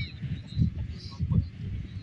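Open-air ambience dominated by irregular wind rumble on a phone microphone, with faint distant voices and a few faint high bird-like chirps.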